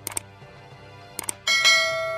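Subscribe-button sound effect: two quick clicks, two more about a second later, then a bright notification-bell ding. The ding is the loudest sound and rings on as it fades.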